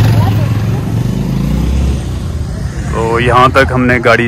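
A motor vehicle running with a steady low rumble and a rushing hiss. A person's voice starts about three seconds in.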